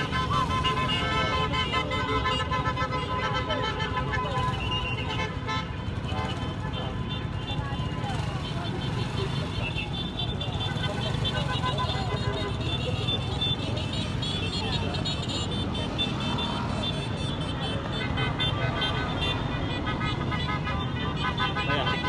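Motorcade of many motorcycles and cars passing in a continuous stream, with horns tooting, people's voices and music mixed in, all at a steady level.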